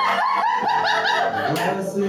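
A group of people chuckling and laughing, mixed with talking, in a short run of repeated voiced bursts.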